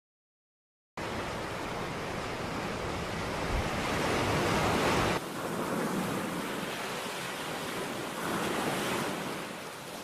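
Sea surf washing onto a sandy beach: a steady rush of waves that starts suddenly about a second in, swells and then drops sharply just past halfway, and swells again near the end.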